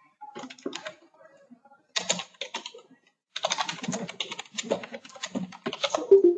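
Typing on a computer keyboard: three bursts of rapid keystrokes, the longest in the second half.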